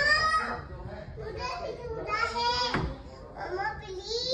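Young children's high-pitched voices: wordless babbling and short, rising and falling calls and squeals.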